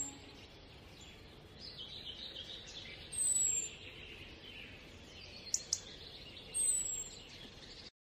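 Birds chirping over faint background noise: a short high falling whistle repeats three times, about three seconds apart. Two quick clicks come a little past the middle.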